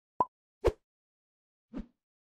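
Three short pop sound effects, the first two loud and about half a second apart, the third softer near the end.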